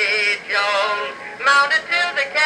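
Edison Amberola 30 cylinder phonograph playing a Blue Amberol cylinder: an acoustic-era recording of male singing, thin, with almost no bass.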